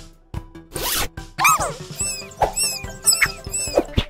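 A plastic cable tie being pulled through its ratchet head: a zip about a second in, then a run of shorter ratcheting strokes, over background music.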